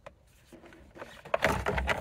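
Plastic steering column cover halves being pulled apart by hand: a quick run of clicks and knocks in the second half as the cover's clips let go.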